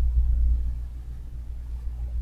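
A steady low rumble, a constant background hum with no other clear sound over it.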